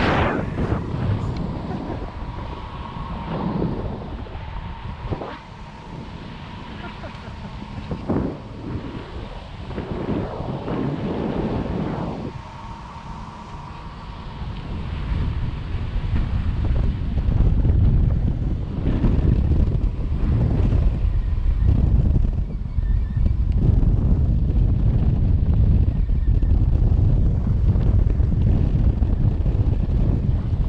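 Wind rushing and buffeting over an action camera's microphone during a tandem paraglider flight, gusty at first and growing louder and steadier after about sixteen seconds. A faint steady high tone runs under the wind for roughly the first twelve seconds.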